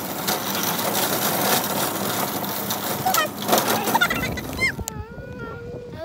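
Plastic wheels of a car-shaped kids' shopping cart rattling as it is pushed across parking-lot asphalt, a dense clattering that dies away about four seconds in. Voices follow near the end.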